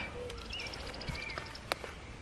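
Faint birdsong: a quick trill of high, evenly spaced notes and a few short whistles. A single sharp click comes near the end.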